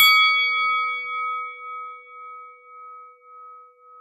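A bell struck once, ringing on and slowly fading with a gentle waver in its level.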